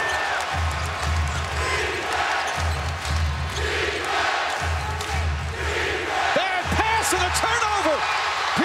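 Arena crowd noise over a thumping bass drum beat from the PA, a pair of beats about every two seconds. Near the end, sneakers squeak several times on the hardwood court.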